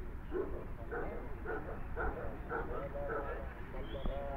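A dog barking repeatedly, in short barks about every half second, under people talking.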